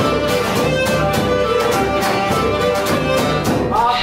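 Cretan folk music: a Cretan lyra playing a bowed melody over a steady rhythmic band accompaniment.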